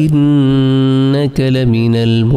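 A man reciting Quranic verses in Arabic in a melodic, drawn-out tajweed style: a long held note of about a second, a brief break, then another sustained note.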